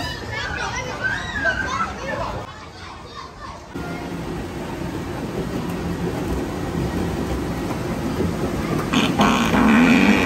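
Children's voices and chatter in a play area for the first few seconds, then background music that gets louder near the end.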